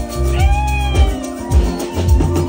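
Live band music with a steady bass-and-kick-drum beat about every two-thirds of a second, and one high note that bends up and back down near the middle.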